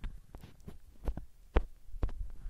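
Irregular low thumps and small clicks, about six in two seconds, from a handheld phone being moved and handled against its microphone.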